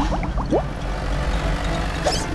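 Cartoon sound effect of a truck engine rumbling as it drives, with a few short rising chirps in the first half-second.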